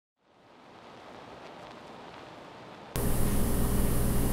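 Steady background hiss of a recording microphone that fades in over the first second, then jumps abruptly louder about three seconds in, joined by a steady low hum.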